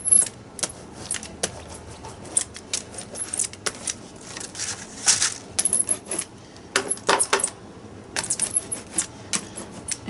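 Hand brayer rolling wet white gesso across a paper journal page: a crackling, clicking sound that comes in bursts with each pass of the roller, busiest about halfway through and near the end.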